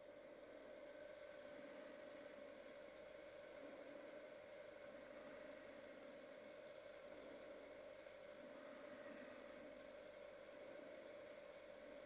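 Near silence: a faint, steady hum from the wood lathe turning while paper towel is held against the oiled vessel to burnish the finish.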